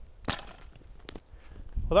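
Vacuum cannon firing: a single sharp pop as the projectile, shoved up the evacuated tube by inrushing air, bursts through the packing-tape seal at the top. A lighter click follows about a second later.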